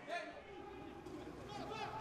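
Faint, indistinct voices over a quiet background, with no distinct sound event.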